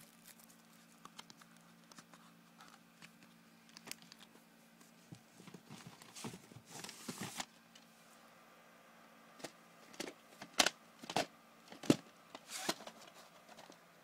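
Plastic VHS tapes and their cases being handled: light rustling and clicks, a brushing scrape about six to seven seconds in, then a run of sharp plastic clicks and clacks in the last few seconds, over a faint steady low hum.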